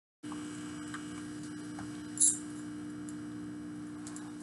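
Steady electrical hum, a constant low tone over faint hiss, with one brief high-pitched clink about two seconds in.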